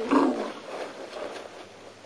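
An African elephant calling once: a short, loud cry right at the start that fades away over about a second.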